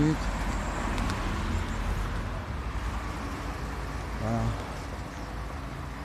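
Street traffic noise, a steady low rumble that is louder at first and slowly fades.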